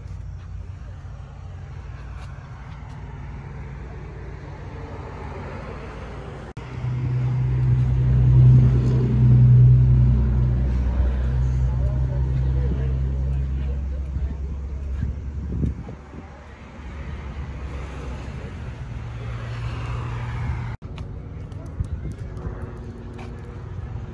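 Big diesel truck engine idling: a steady low drone. It gets much louder for several seconds after a cut about a quarter of the way in, then drops back.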